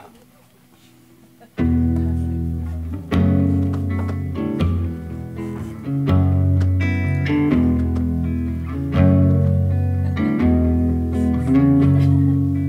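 A solo guitar starts the instrumental intro of a slow song about one and a half seconds in, after a moment of quiet room tone. Its chords ring out and change every second or two.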